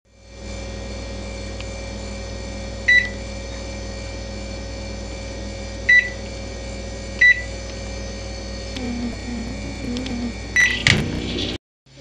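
Microwave oven humming steadily, with three short keypad beeps as the cooking time is set. A fourth beep and a louder burst of noise come near the end.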